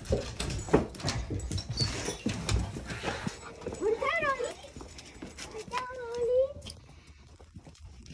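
A black Labrador being led out on a leash: a run of clicks and knocks from the door, footsteps and claws, then two short high whines from a dog, about four and six seconds in.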